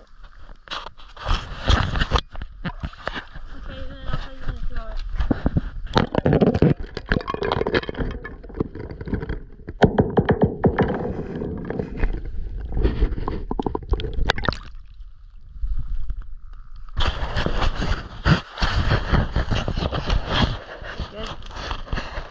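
An action camera being handled and set in shallow, icy pond water: a string of sharp knocks and scrapes with water sloshing and gurgling, and a short quieter gap about fifteen seconds in.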